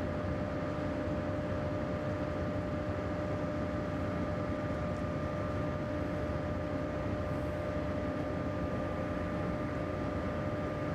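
Machinery at a deep borehole drilling site running steadily: a constant drone with a few held humming tones that does not change.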